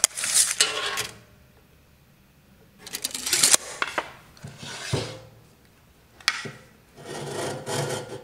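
Wooden boards set down and slid on a concrete floor, making four separate scraping rubs with quiet gaps between them, as a thin plywood shim is pushed against the foot of a metal bandsaw stand to level it. A sharp click comes at the very start and another a little after six seconds.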